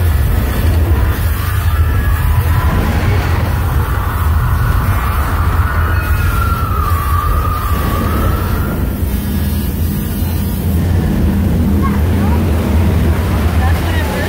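Loud, steady low rumbling of a simulated earthquake effect on a theme-park ride set. A wavering whine rises and falls through the middle.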